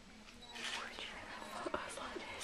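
A person whispering softly in two short breathy stretches, with a couple of sharp clicks near the end.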